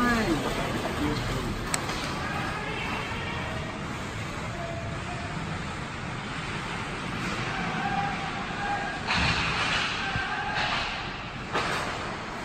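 Indoor ice hockey game in play: distant voices and calls from players and spectators over the rink's steady background noise, with a sharp click about two seconds in and two short hissing scrapes of skates on ice near the end.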